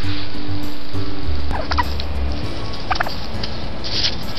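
Wild turkeys calling in two short bursts, about a second and a half and three seconds in, over steady background music.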